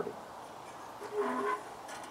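A quiet pause with a brief, faint murmur of a man's voice about a second in.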